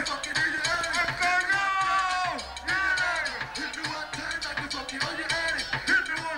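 Reggaeton music with a steady, driving beat and a voice rapping or singing over it.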